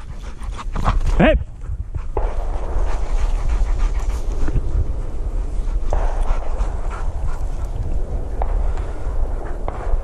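Hunting dog panting hard, close by, after a retrieve, over a steady low rumble.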